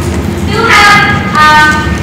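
A woman's voice speaking with long, drawn-out vowels over a steady low background rumble.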